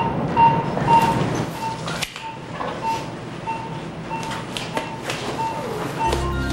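Pulse oximeter beeping with the heartbeat, a short steady single-pitched beep about twice a second, over rustling of hands and bedding with a sharp click about two seconds in.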